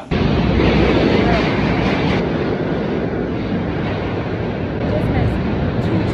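Subway train noise in an underground station: a loud, steady noise that starts suddenly and holds without a break.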